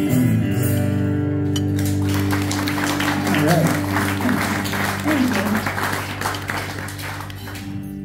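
The last chord of a duo on acoustic and electric guitar rings out, then about two seconds in an audience starts clapping, with a voice or two calling out; the applause dies away near the end.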